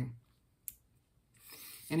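A single short, sharp click in a pause, followed by a soft hiss that builds just before speech resumes.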